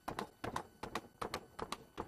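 Handheld Jacquard blade meat tenderizer pressed again and again into a raw tri-tip roast to tenderize it. It makes a quick, slightly irregular run of sharp clicks, several a second, as the spring-loaded blades punch in and spring back.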